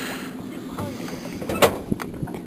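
Steady low hum of a boat's engine running, with a single sharp click about a second and a half in.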